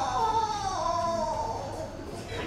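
A high, wavering wail, like a person crying out, falling in pitch and fading away about one and a half seconds in.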